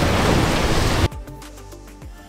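Steady rushing noise of wind and water on the microphone aboard a boat, cut off abruptly about a second in, after which quiet music plays.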